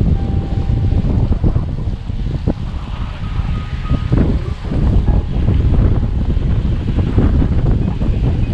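Wind buffeting the microphone of a camera on a moving road bike: a dense low rumble that swells and eases as the bike rolls along.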